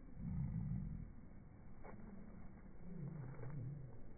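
Australian magpie calls slowed down into deep, wavering growls: one in the first second and another about three seconds in, with a single sharp click between them.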